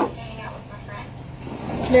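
Mostly speech: faint, quiet talking over a steady low hum, then a woman's voice starting clearly near the end.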